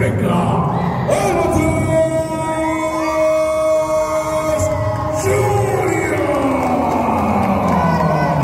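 A ring announcer's voice over the arena PA. He draws out one long held call for several seconds, then lets it fall in pitch, over a noisy crowd.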